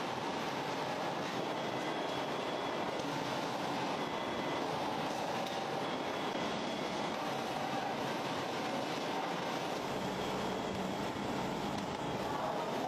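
Steady mechanical running noise of food-processing machinery, even in level throughout with a few faint steady whining tones in it.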